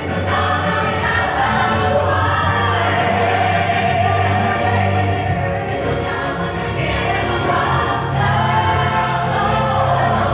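Recorded music with singing voices over a steady low bass, playing loud and continuous.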